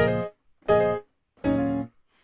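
Piano keyboard playing three short, detached chords about three-quarters of a second apart, each cut off sharply.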